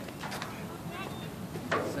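Outdoor background noise with faint voices, then a short sharp sound near the end as a man starts to speak.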